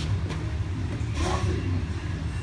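Steady low hum of a pedestal floor fan running, with a sharp knock at the very start and a short voice sound about a second in.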